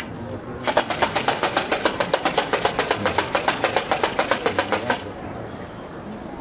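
A rapid, evenly spaced run of sharp clacks, about eight a second. It starts about a second in and stops abruptly after about four seconds.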